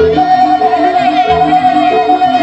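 Javanese jaranan gamelan music: short metallic notes repeat a melody over low drum and gong strokes. A long high note is held from just after the start almost to the end.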